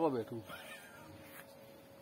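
A man's voice through a microphone and loudspeaker saying one short word with a rising-then-falling pitch, followed by a quiet pause in which a faint steady hum carries on.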